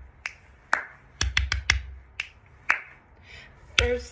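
Fingers snapping: about nine sharp snaps at an uneven pace, with a quick run of four about a second and a half in. A woman starts singing near the end.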